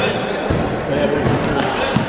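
A basketball bouncing on an indoor court floor, three thuds: one at the start, one about half a second in and one near the end, with voices chattering in the background.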